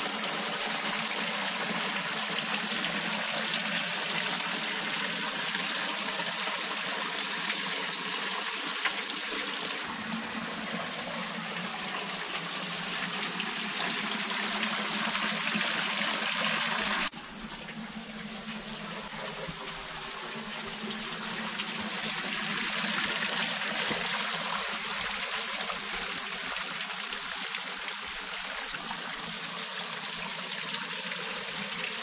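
Spring water running over stone steps and spilling from a small stone basin: a steady trickle and splash. The sound shifts abruptly twice, about ten and seventeen seconds in.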